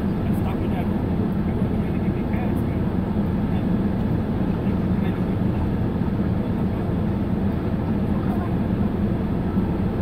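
Steady low rumble of a car idling while parked, heard from inside the cabin.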